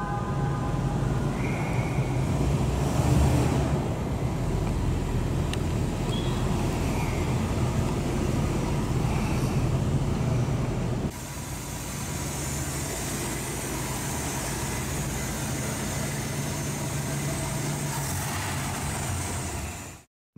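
1949 Oldsmobile Rocket 88's V8 engine running steadily as the car is driven, with a short horn-like tone at the very start. The sound drops a little in level about eleven seconds in.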